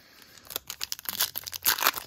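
Foil wrapper of a Topps Chrome Sapphire baseball card pack crinkling and tearing as it is handled and ripped open: a quick run of sharp crackles starting about half a second in.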